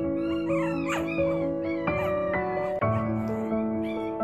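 Background music of steady held chords, with four-week-old Mi-Ki puppies whining and yipping over it, mostly in the first two seconds.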